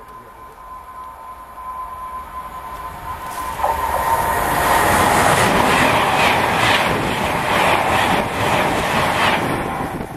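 A high-speed express passenger train approaching and passing close by at speed. A thin steady tone and a growing rush build for about four seconds into a loud rush of wheels and air with rapid clicking of wheels over the rail joints, which dies away near the end.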